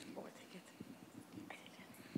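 Near silence: room tone with faint, indistinct murmuring.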